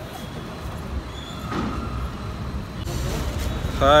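Steady low rumble of outdoor street and traffic noise, with faint voices of people around; a man's voice begins near the end.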